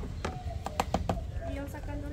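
Quick run of sharp taps and knocks, about six in the first second or so, from kitchen utensils knocking against metal pots and a wooden board while potatoes are prepared.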